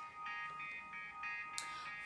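Quiet instrumental backing music: a run of short high notes, about four a second, over a steady high-pitched tone.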